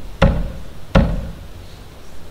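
A fist knocking twice on a wooden lectern, two heavy thumps about three-quarters of a second apart. The knocks act out someone beating on a door.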